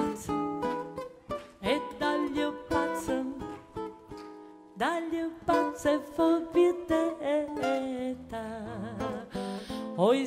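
Live folk ensemble music with plucked acoustic guitar notes. A sustained melody line bends and wavers in pitch above them, and the playing drops quieter for a moment about four seconds in.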